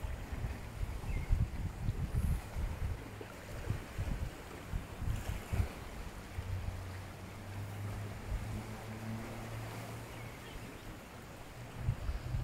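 Wind buffeting the phone's microphone in irregular gusts, with a steady low hum for a few seconds in the second half.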